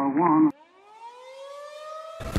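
Siren winding up, one rising wail that climbs in pitch and then levels off, starting about half a second in after a man's voice on an old, narrow-band recording ends.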